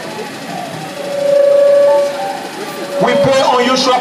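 A single held note, steady in pitch, for about a second, then a man's voice over the loudspeakers from about three seconds in.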